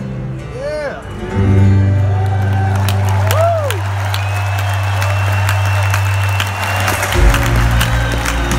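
Concert sound through an arena PA: a low sustained drone with whooping radio-tuning whistles that rise and fall, snatches of voices and some crowd cheering. Near the end the drone gives way to a deeper bass.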